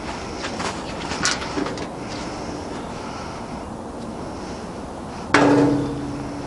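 A sharp knock near the end, the loudest sound, followed by a low ringing tone that fades within about a second. Before it there is faint outdoor background and a single light click about a second in.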